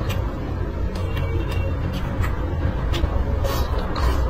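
Close-miked chewing of braised pork ribs and rice, with several sharp wet mouth clicks over a steady low rumble.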